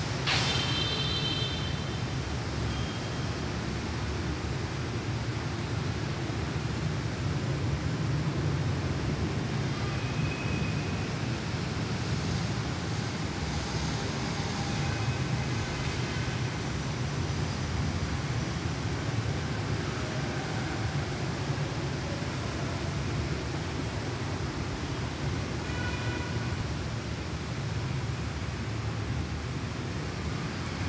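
Motorised car turntable (mâm xoay ô tô) turning a parked car, its drive motor and rollers giving a steady low mechanical rumble. A brief high ringing note sounds in the first second as it gets going.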